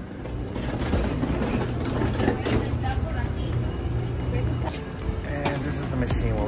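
Steady low rumble of background noise with faint voices in it.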